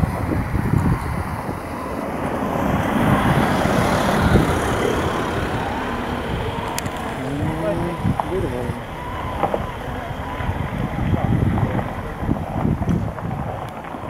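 Wind buffeting the microphone, with common cranes calling now and then from flocks flying overhead.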